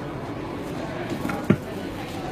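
Scissors cutting around a paper toner transfer sheet, with one sharp snip about one and a half seconds in, over steady crowd babble.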